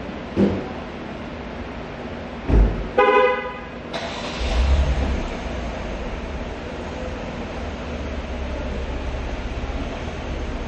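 Two thumps, then a vehicle horn sounds once for about a second, followed by the low rumble of a vehicle engine that settles into a steady hum.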